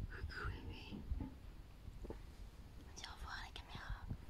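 Soft whispering, a person's breathy voice without clear pitch, in two short spells near the start and around three seconds in, over low rumble and light knocks from the phone being handled.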